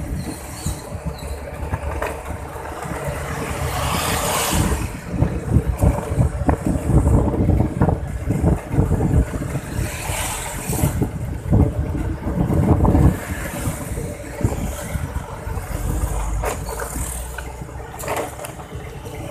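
Wind buffeting the microphone over the steady engine and road noise of a moving motorcycle, the rumble swelling and easing in gusts, with other traffic around.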